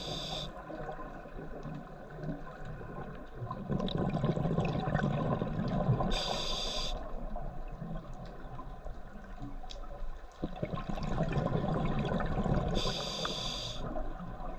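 Scuba diver breathing through a regulator underwater. A short hiss of inhaled air through the demand valve comes three times, about every six and a half seconds. Between the hisses, exhaled bubbles give a long, low bubbling rumble.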